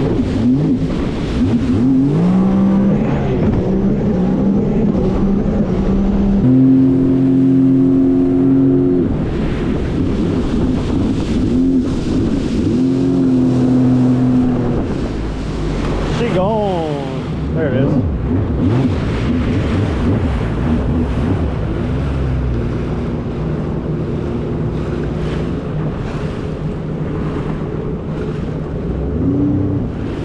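Sea-Doo RXT-X 300 personal watercraft's supercharged three-cylinder engine running at speed, its pitch climbing and falling several times as the throttle changes, with a quick dip and rise a little past halfway. Water rushes along the hull underneath.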